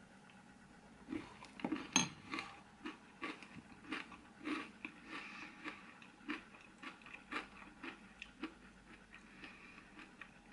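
A person chewing a mouthful of crunchy cereal with freeze-dried marshmallows: faint, irregular crunching that starts about a second in, with one sharper click about two seconds in.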